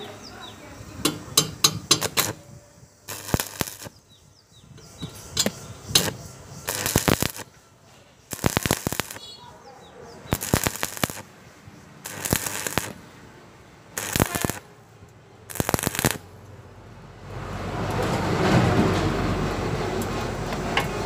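Stick-welding arc on thin steel square tubing, crackling in short bursts of about half a second, roughly nine of them, each a second or so apart. The arc is struck and broken again and again, the stop-start way of welding thin hollow tube. A steadier, louder noise rises over the last few seconds.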